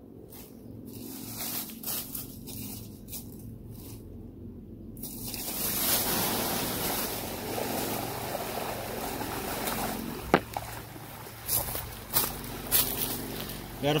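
Plastic rustling and clicks as the bag taped over the end of a 4-inch PVC siphon pipe is cut open. About five seconds in, water starts gushing steadily out of the pipe onto the leaf litter, a sign that the gravity-fed siphon has started and is draining the pond.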